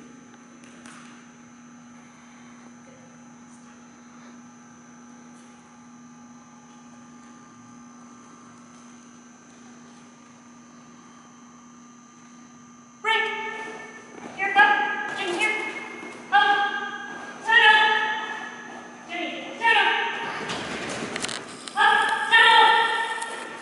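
Quiet room tone with a faint steady hum, then, from a little past halfway, a dog barking over and over, about one bark a second.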